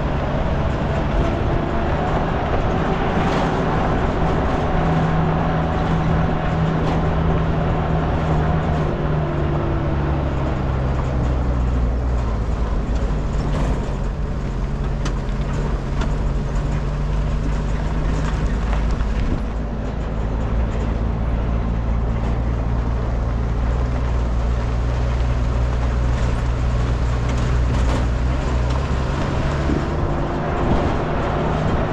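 A vehicle engine running steadily under a rush of road and wind noise, its pitch drifting up and down a few times as the speed changes.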